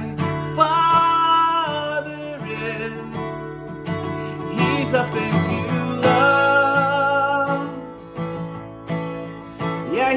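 A man singing over a strummed acoustic guitar, holding a long note about a second in and another near six seconds in.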